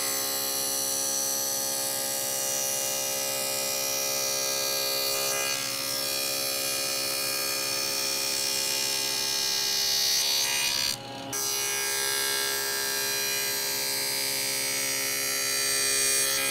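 Table saw spinning a dado stack, running steadily as plywood panels are fed through to cut rabbets along their edges. There is a brief break in the sound about eleven seconds in.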